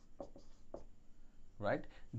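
Marker pen writing on a whiteboard: two short, faint strokes in the first second.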